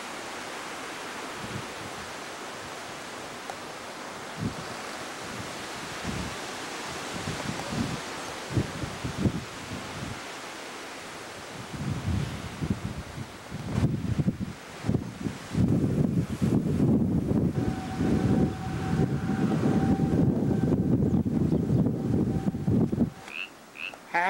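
Steady hiss of running water with a few soft knocks. From about twelve seconds in, gusting wind buffets the microphone in a loud, uneven low rumble, with a faint steady tone above it near the end.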